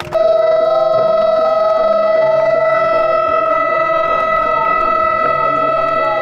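A siren sounded to mark the official opening, starting abruptly and holding one loud, unwavering pitch, with music playing faintly underneath.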